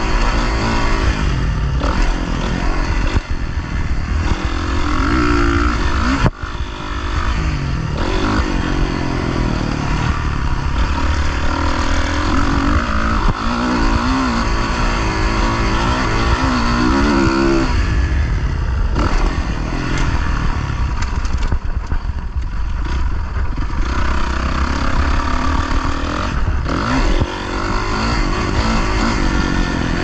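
Motocross dirt bike engine heard on board, revving up and falling back again and again as the rider accelerates, shifts and rolls off the throttle around the track.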